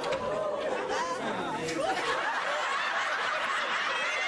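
Sitcom studio audience laughing, many voices overlapping in a sustained, even laugh.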